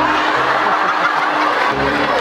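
An audience of many young voices laughing and chattering at once, overlapping with no single voice standing out.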